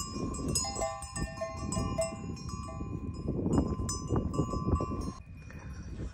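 Cowbells on grazing cows clanking irregularly, several bells with overlapping ringing tones. They stop about five seconds in.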